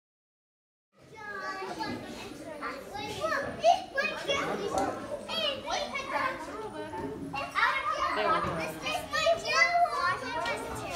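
Many children's voices chattering and calling out at once, with high rising and falling shouts, starting suddenly about a second in after dead silence.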